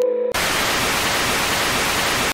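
Television static hiss used as a transition effect, a steady rush of white noise that cuts in abruptly about a third of a second in. Just before it, the last of a mallet-like synth music tune.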